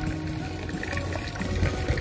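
Soft background music in a pause between speech, over a steady low rumble.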